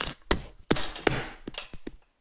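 A quick, irregular run of knocks and taps, growing fainter toward the end: handling noise from a phone being moved and set up while it records.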